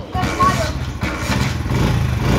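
Honda CD70 motorcycle's small single-cylinder four-stroke engine coming to life just after a kick start and running with a steady, fast, even putter.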